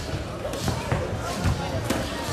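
Several dull thuds from a kickboxing bout, gloved and shin-guarded blows and feet on the ring canvas, over voices in the hall.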